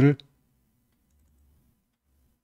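The tail of a spoken word at the very start, then quiet room hum with faint computer mouse clicking about one and a half seconds in.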